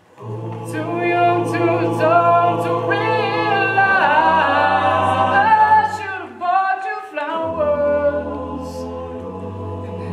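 Male a cappella group singing in close harmony, with a lead voice on a microphone over a sung bass line. The voices swell in just after a brief pause at the start, and the bass drops to a deeper note about seven and a half seconds in.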